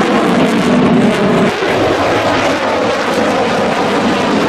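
Lockheed Martin F-22 Raptor's twin Pratt & Whitney F119 turbofans running at high power as the jet pitches through a steep manoeuvre overhead. A loud, steady jet noise, easing slightly for a moment about a second and a half in.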